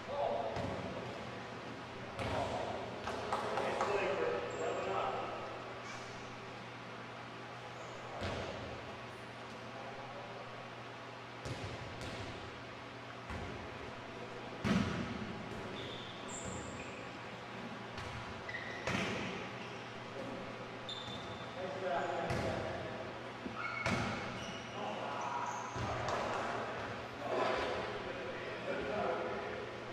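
Volleyball rally in a reverberant gymnasium: a volleyball struck by hands and hitting the floor, a dozen or so sharp slaps with an echoing tail, the loudest about halfway through. Players' voices call out between hits near the start and toward the end.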